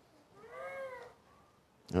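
A single faint, high-pitched, meow-like cry, about a second long, whose pitch rises and then falls.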